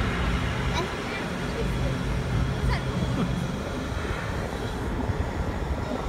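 Amusement ride in motion: a steady low rumble and hum of its machinery, with noise rushing over the open-air seats.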